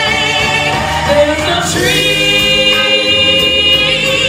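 A woman singing a show tune over musical accompaniment, with wide vibrato; her pitch slides about a second and a half in, and from about two seconds in she holds one long note.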